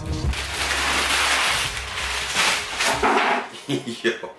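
Packing tape ripped off a cardboard box and the flaps pulled open: a long tearing rasp for about two seconds, then a few sharp cardboard snaps near the end.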